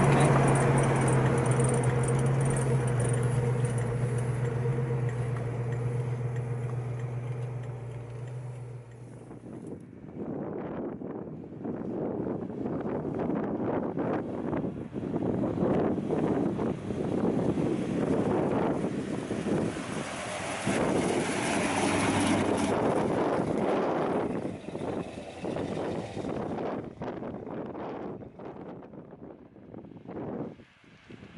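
1970 Pontiac GTO's V8 with Flowmaster exhaust heard from inside the cabin, running at a steady note that slowly eases off. Then, heard from the roadside, the car drives by with wind buffeting the microphone; the sound swells in the middle and fades near the end.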